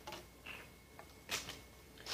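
Faint handling sounds of two plastic soda bottles: a few light clicks, then one sharper knock about a second and a half in as they are set down.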